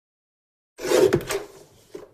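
Paper trimmer (guillotine) cutting card: a short scraping slide of the blade with a few clicks, starting about a second in and fading within a second.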